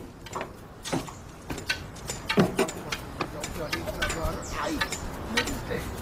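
Faint voices in the background with scattered light clicks and knocks.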